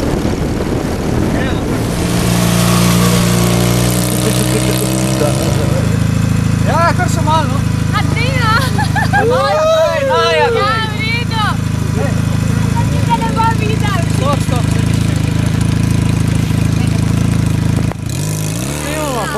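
Cruiser motorcycle engine running as the bike pulls up, then idling steadily with a low even hum. Voices call out over it for a few seconds in the middle.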